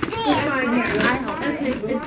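Young children's voices talking and exclaiming over one another, high-pitched and unbroken by any pause.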